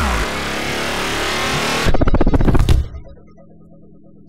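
Electronic intro music: a dense noisy whoosh, then a burst of rapid hits about two seconds in, before it drops suddenly to a quiet low drone.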